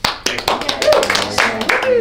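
A small group clapping, irregular claps from several pairs of hands, with a few voices mixed in.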